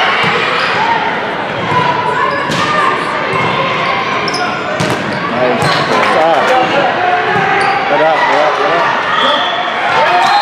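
Volleyball rally in a gymnasium: the ball is struck sharply a few times amid players and spectators shouting and talking.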